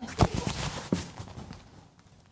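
Close handling noise as an earbud is fumbled by the ear: a sharp knock about a quarter second in, a smaller tick near one second, and rustling that fades out.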